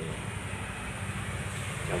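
Steady hiss of light drizzling rain, with a low rumble underneath.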